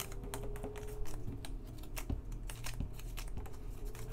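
Game cards being picked up by hand and gathered into a small stack: irregular light clicks and taps of card against card and the playmat.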